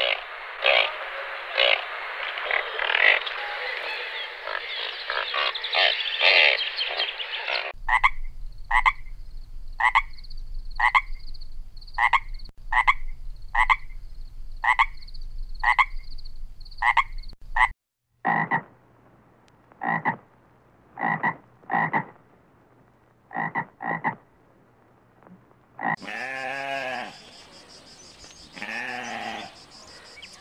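Frogs croaking: a dense, continuous chorus for the first eight seconds, then single croaks repeated about once a second. Near the end, two bleats from a mouflon.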